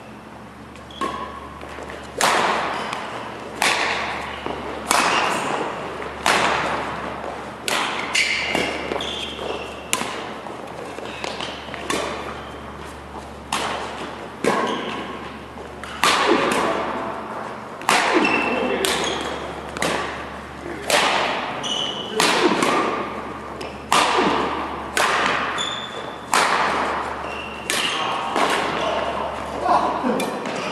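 Badminton rackets hitting a shuttlecock in a fast doubles rally: sharp cracks about once a second that ring on in a large hall, with short high squeaks of court shoes on the mat between hits.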